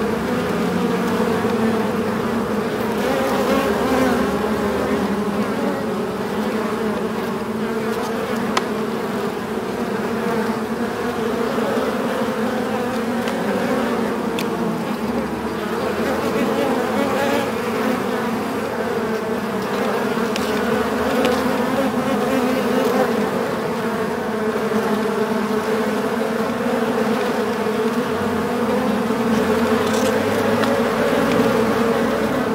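Many bees buzzing inside a beehive: a dense, steady hum, with a few faint ticks.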